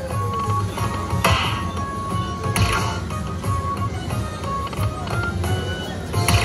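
Lightning Link Happy Lantern slot machine playing its electronic free-spins bonus music, short beeping notes over a steady low room rumble, with a couple of sharp clicks as the reels spin and stop.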